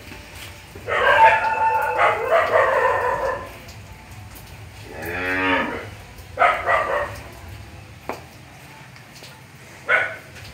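Calves mooing in a barn pen. A long, high-pitched call comes about a second in and lasts over two seconds, then a lower, shorter moo near the middle, followed by brief calls.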